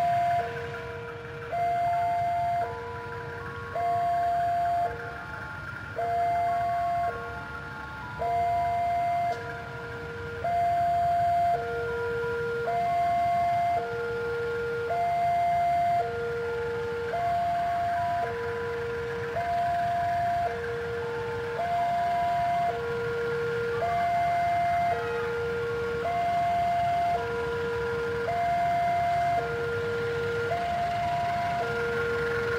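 Railway level-crossing warning alarm sounding steadily: two electronic tones, high then low, each held about a second, repeating over and over while a train approaches, with a low steady rumble beneath.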